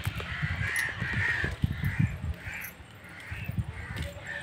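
Birds calling outdoors in a series of short, separate calls, about two a second. Low rumbles on the microphone come in the first half and again near the end.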